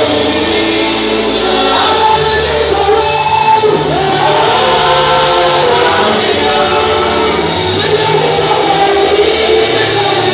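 Loud gospel music: a group of voices singing together over long held bass notes.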